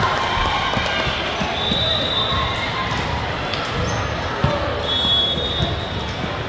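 Echoing sports-hall din: voices of players and spectators mixed with balls thudding on the hard floor, a sharp smack about four and a half seconds in, and a couple of brief high squeaks.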